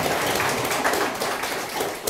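Audience applause: many hands clapping together, starting to fade near the end.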